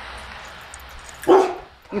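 Steady outdoor background hiss. About a second and a quarter in, one short, loud pitched call breaks through, and a voice starts speaking just before the end.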